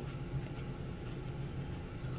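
Steady low background hum over a faint rumble, with no distinct events.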